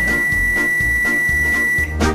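Sharp microwave oven beeping: one long, steady, high-pitched electronic beep lasting nearly two seconds, over background music.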